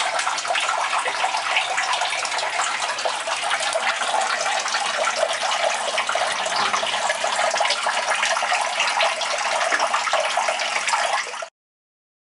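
Turtle tank filter running, its outflow pouring and splashing steadily into the water, then cutting off suddenly near the end.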